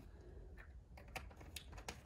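Faint, light plastic clicks and taps from a plastic bottle and its cap being handled, about half a dozen irregular clicks, over a low steady rumble of wind on the microphone.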